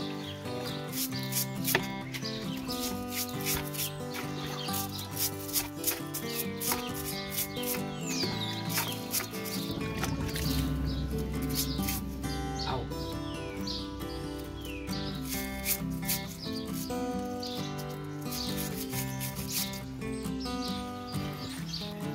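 Background music with sustained notes, with short high chirps and clicks over it.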